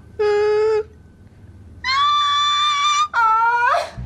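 A woman's voice making three drawn-out wordless notes. The first is short and mid-pitched, the second is longer and much higher, and the third is lower and swoops up at the end.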